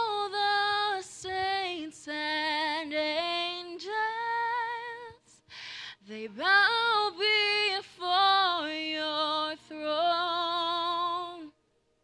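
A young woman singing a worship song solo and unaccompanied into a handheld microphone, in held notes that slide between pitches, in phrases broken by short breaths. One audible breath comes about halfway through.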